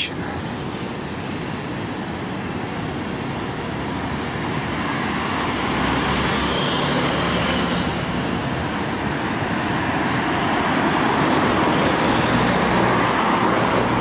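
Road traffic: a steady wash of tyre and engine noise from passing cars, growing gradually louder, with the low hum of a double-decker bus's engine.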